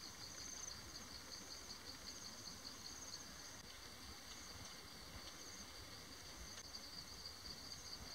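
Faint, steady chorus of insects in the grass, a rapid high-pitched trilling on two pitches that carries on without a break.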